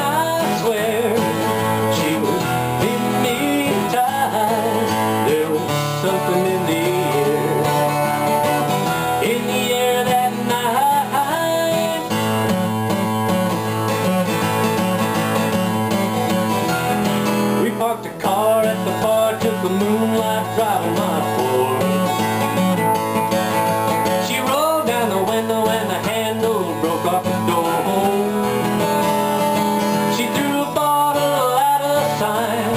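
Steel-string acoustic guitar played solo in a country style, strummed chords with picked melody lines over them. The playing dips briefly about eighteen seconds in, then carries on.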